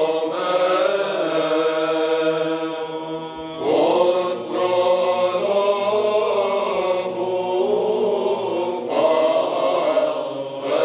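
Orthodox church chant: voices singing a slow melody over a steady held low drone, with new phrases entering about four seconds in and again near the end.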